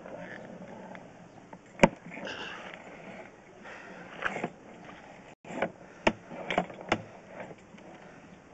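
Drain inspection camera being pushed along a drain pipe on its rod: irregular knocks and scraping, with one sharp click about two seconds in as the loudest sound and a quick run of clicks in the second half.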